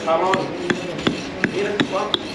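Small hand pick hammer chipping at a block of alabaster in steady, even strokes, about three sharp strikes a second, as the rough shape of a vase is knocked out of the stone.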